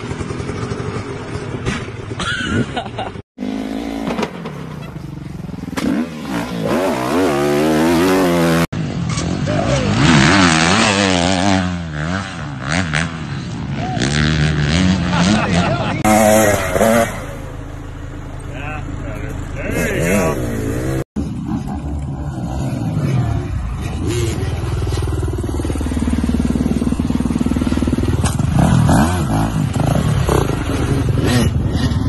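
Dirt bike engines revving and running across a string of short clips, the pitch rising and falling with the throttle, with abrupt changes where the clips cut. People's voices are heard under the engines.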